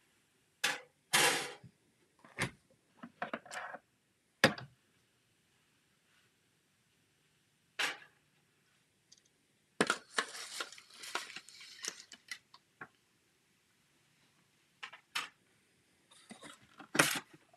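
Scattered clicks, knocks and plastic clatter as the cutting plates, metal die and folding flaps of a manual cut-and-emboss machine are handled and set in place, with a brief busier run of clatter and rustling about ten seconds in.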